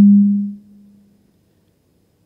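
A loud, steady low hum from the sound system, most likely microphone feedback, fading out about half a second in; then near silence.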